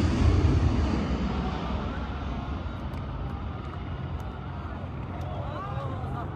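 Jet engines of a C-17 military transport climbing away overhead: a loud, deep rumble that fades gradually. People's voices call out faintly from about two seconds in, louder near the end.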